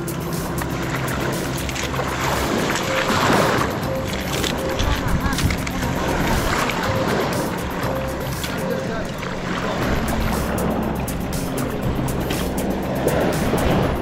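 Background music with steady held notes, over the continuous rush of a strong tidal current flowing and sloshing around the legs in knee-deep water.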